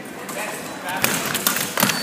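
A quick sabre fencing exchange: a cluster of sharp knocks and clashes in the second half, from fencers' feet stamping on the piste and sabre blades meeting, with voices in the hall.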